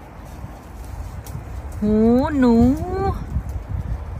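A low, uneven rumble on the microphone, with a woman's voice speaking a short phrase from a little under two seconds in.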